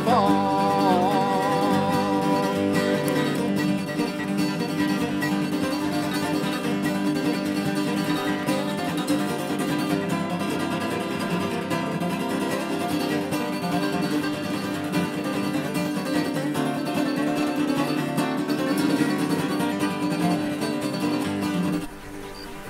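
Three acoustic guitars playing a country-style instrumental break, one flatpicked lead over strummed chords. The last sung word, "farm", is held with a wavering voice over the first two or three seconds.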